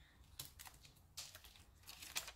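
Faint handling of paper: a few soft taps and rustles as a paper tag with an adhesive sheet on its back is pressed down and picked up.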